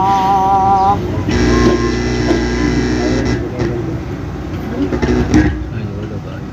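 A boy's singing voice through a loudspeaker, holding a long wavering note that stops about a second in. It is followed by a steady drone of several tones over a low rumble for about two seconds, then mixed crowd noise.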